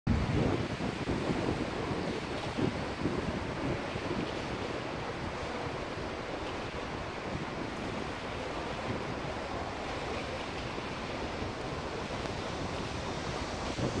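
Wind blowing across the microphone, gusting hardest in the first couple of seconds, over a steady rush of choppy river water.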